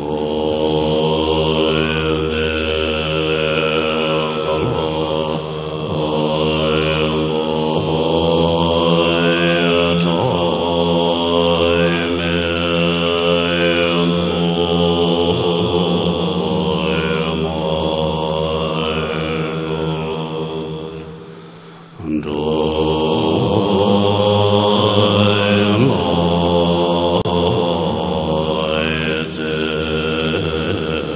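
Buddhist monks chanting a prayer together in a low, drawn-out, droning melody. The chant fades and breaks off briefly a little past twenty seconds in, then resumes.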